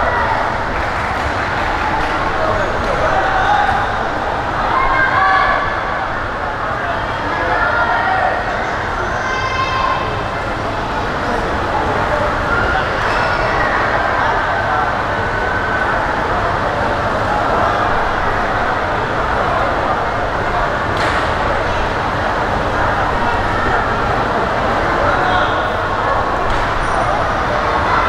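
Spectator crowd noise around the ring: many voices talking and calling out at once in a steady hubbub, with scattered shouts standing out.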